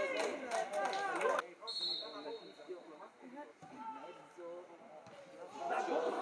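A man's voice talking that cuts off abruptly about a second and a half in, followed by quieter open-air football-pitch sound: distant players' voices and a brief high steady referee's whistle. The voices grow louder again near the end.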